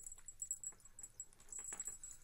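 Long-haired black cat eating off a wooden floor, its chewing heard as faint scattered clicks and ticks.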